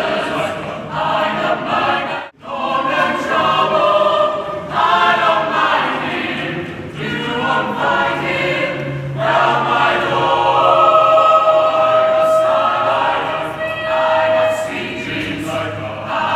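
A choir singing, with a brief break about two seconds in and long held notes in the second half.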